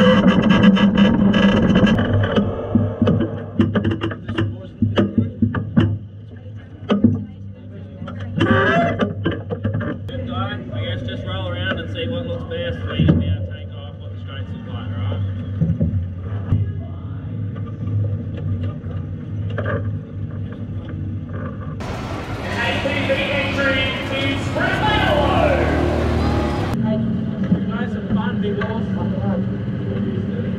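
A public-address announcer's voice over the speedway loudspeakers introducing the drivers, over the steady drone of a vehicle engine.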